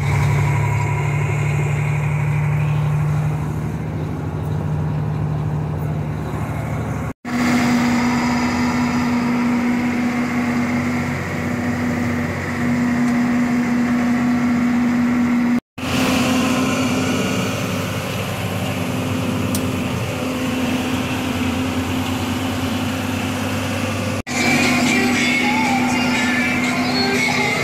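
Steady diesel engine drone heard inside the cab of a John Deere 4630 tractor, with a steady whine over the engine note. The sound drops out briefly three times.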